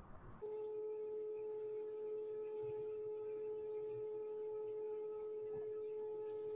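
A steady electronic tone at a single mid pitch, held without change, starting about half a second in.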